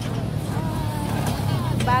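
Steady low engine rumble of quad bikes (ATVs) running, with voices over it.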